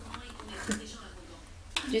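Mostly quiet room tone with a faint low hum, broken by a short spoken word; speech starts again near the end.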